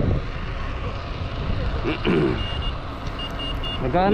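Wind noise on the microphone of a bike-mounted camera as a mountain bike rides along a road. A series of short high beeps comes in the second half.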